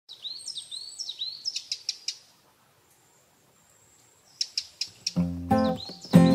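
Small birds chirping in quick, high repeated calls, falling quiet for about two seconds, then chirping again. About five seconds in, acoustic guitar music begins.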